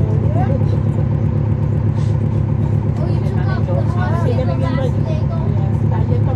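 Cummins ISL9 diesel engine of a 2011 NABI 40-SFW transit bus heard from inside the bus, running with a steady low drone at an even engine speed. Voices of people talking carry over it.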